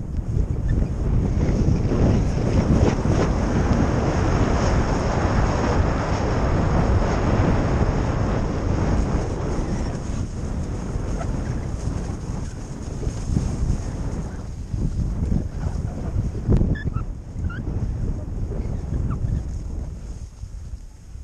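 Wind rushing over the microphone of a skier's action camera while skiing fast down soft, tracked powder, with the skis hissing through the snow. The sound is loudest in the first few seconds and eases somewhat in the second half.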